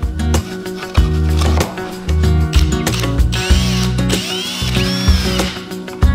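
Cordless drill running in short spells, with clicking and a whine that rises and falls in the middle, over background music.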